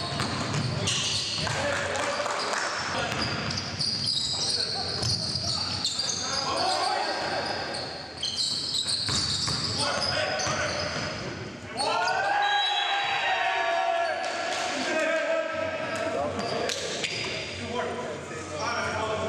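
Basketball bouncing on a hardwood gym floor during live play, with players' voices calling out over it. Includes a long raised call starting about twelve seconds in.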